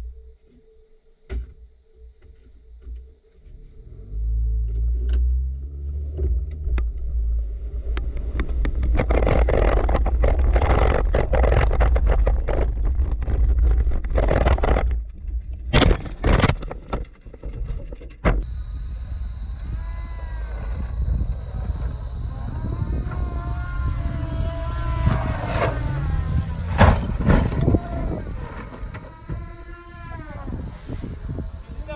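Background music over a Mazda 3 being driven hard on a dirt track, its engine stuck in fourth gear, with a low rumble and a few sharp knocks and scrapes.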